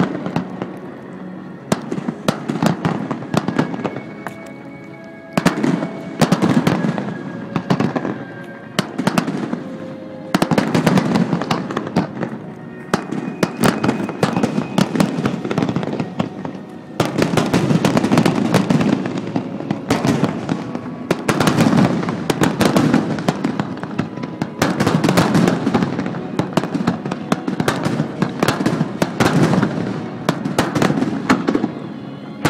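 Aerial firework shells bursting one after another, with bangs and crackling. There is a lull a few seconds in before the barrage picks up again, staying dense through the second half.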